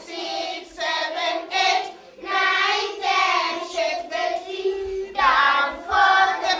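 A class of young schoolchildren singing together in unison, in short phrases broken by brief pauses.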